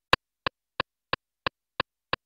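Akai MPC metronome clicking steadily, about three clicks a second, as a count-in with the sample playback stopped.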